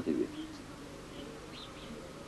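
A pause after a voice trails off at the start: faint steady background hiss with a few faint, short high chirps.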